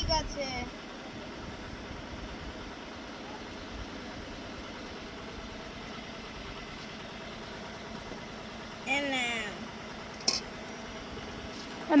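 Steady low background hum, with a short voice about nine seconds in and a single sharp click about a second later.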